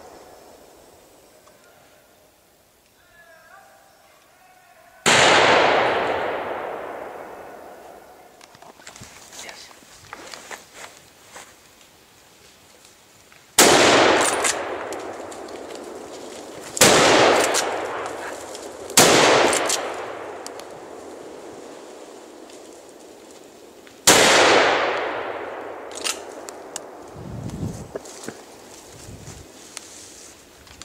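Five hunting-rifle shots, unevenly spaced over about twenty seconds. Three of them come close together in the middle. Each is a sharp crack followed by a long echo rolling away through the forest.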